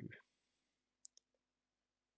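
Near silence with two quick, faint clicks from a computer mouse about a second in.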